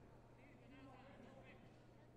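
Near silence: faint sports-hall room tone with a steady low hum and distant, indistinct voices about half a second to a second and a half in.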